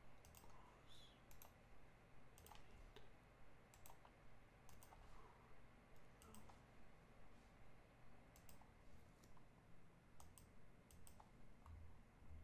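Faint computer mouse clicks, about a dozen scattered irregularly, over near-silent room tone.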